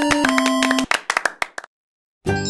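Clapping sound effect over a simple electronic children's tune. The melody stops just under a second in, a few claps trail on, and then the sound cuts to silence.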